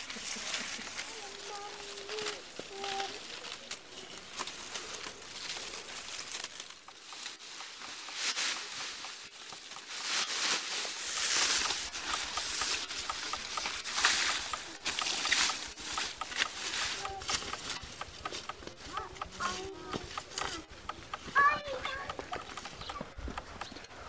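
Dry reed strips and stalks rustling and crackling in irregular bursts as they are woven and handled.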